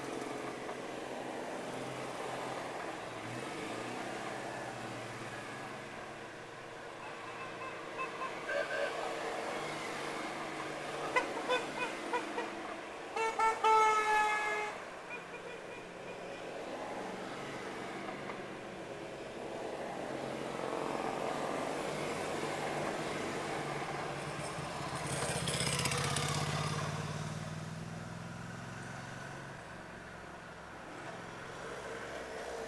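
A convoy of Citroën 2CVs driving past, their small two-cylinder engines running, while car horns toot: a few scattered short beeps, then a quick run of beeps and a longer, louder honk just before the middle. Late on, the vehicle noise swells as a car passes close.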